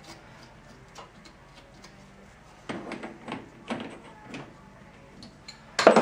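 13x40 metal lathe running while a boring bar cuts a bevel into the inside edge of a bushing sleeve: a faint steady hum with scattered ticks, then short bursts of cutting noise from about a third of the way in. A sharp, loud clatter comes near the end.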